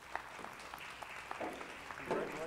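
Sparse, scattered clapping from a few people, individual claps heard irregularly rather than as a full crowd's applause.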